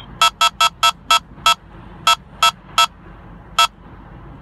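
Escort Passport Max radar detector sounding a K-band alert: about ten short electronic beeps, quick at first and then spacing out as the signal weakens. The alert is set off by a passing vehicle's K-band collision-avoidance radar sensor, with traffic sensor rejection switched off.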